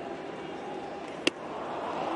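Steady ballpark crowd hiss, with a single sharp pop about a second and a quarter in: a strike-three pitch smacking into the catcher's mitt.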